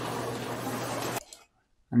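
Coffee-shop background noise with voices chattering, picked up by the Insta360 Link webcam's built-in microphones. It cuts off abruptly a little over a second in, leaving near silence.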